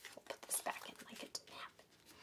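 Playing cards being handled: a string of light, irregular taps and slides of card stock as cards are stacked back onto a draw pile.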